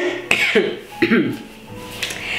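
A woman laughing in a few short bursts with her hand to her mouth, most of it in the first second and a half.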